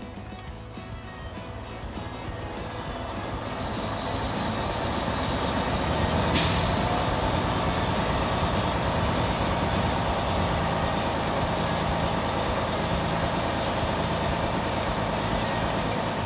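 Detroit diesel truck engine running in neutral, growing louder over the first few seconds as engine speed comes up at the start of a parked DPF regeneration, then holding a steady hum. A short burst of air hiss comes about six seconds in.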